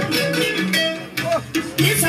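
Music led by a plucked string instrument playing a melody of held notes.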